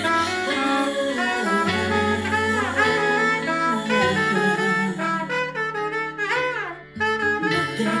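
Soprano saxophone playing a jazzy solo melody over a backing track with a bass line. About six seconds in, a note slides down in pitch, followed by a brief break before the playing resumes.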